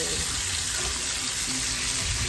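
Chicken pieces frying in olive oil in a frying pan, a steady sizzle.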